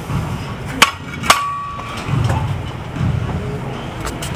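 Two sharp metallic clanks about half a second apart, the second ringing briefly, over a low rumble that swells and fades about once a second: the weight-stack plates of a gym cable machine knocking together during cable reps.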